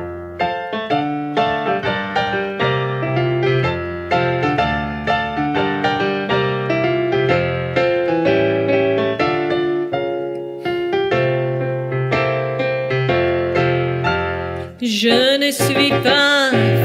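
Digital piano playing a solo passage of chords and melody, note after note. A woman's singing voice with a wavering vibrato comes in near the end.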